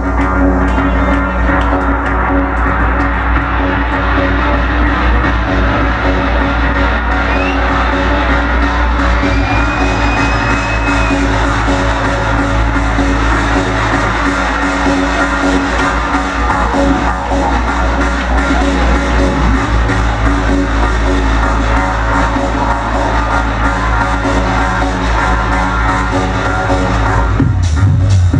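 Techno DJ set played loud through a club sound system: sustained droning synth tones over a steady deep bass, with a heavier bass line coming in near the end.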